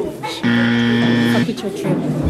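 Electronic buzzer sound effect: one flat, steady buzz about a second long that starts and cuts off abruptly.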